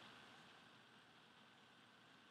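Near silence: faint steady recording hiss.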